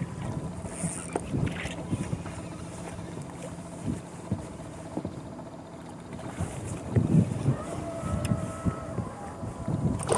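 Wind buffeting the microphone and small waves slapping against the boat's hull, with irregular low thumps that are heaviest about seven seconds in.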